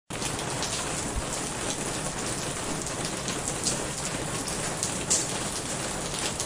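Steady rain falling: an even hiss, dotted with many scattered sharp ticks of individual drops.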